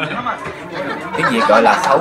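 Several people chattering and talking over one another, the voices getting louder near the end.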